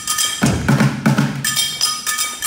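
Kitchen percussion: pots, pans and stainless steel stoves struck as drums in a quick rhythm. The sharp metallic hits leave ringing tones over low thuds.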